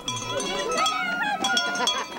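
Small metal bells ringing, struck again and again, with voices talking over them.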